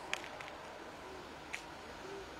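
Faint outdoor street background noise: a steady low hiss with a few brief, faint high ticks, one just after the start and one about a second and a half in.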